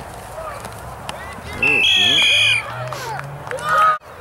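Spectators shouting during a football play, then a referee's whistle blown hard for about a second in the middle, its pitch dropping slightly halfway through, blowing the play dead. A loud shout comes just before the end.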